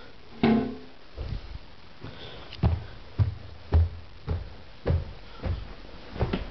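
Footsteps on a hard floor at a steady walking pace: a row of dull thumps about every half second.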